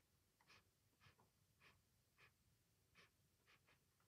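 Near silence, with faint short ticks roughly every half-second.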